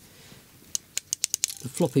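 A quick run of about eight light, sharp clicks over less than a second, as a transmitter gimbal unit is handled and set into its opening.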